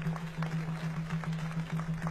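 Scattered audience clapping, irregular individual claps, over a steady low tone.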